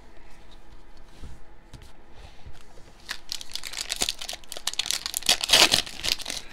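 Foil wrapper of a Mosaic basketball card pack crinkling and tearing as it is handled and opened. Light handling noise at first, then dense crackles from about three seconds in, loudest near the end.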